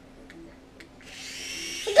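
Toy mini quadcopter's small electric motors and propellers spinning up about a second in, a steady high-pitched whir. A child shouts right at the end.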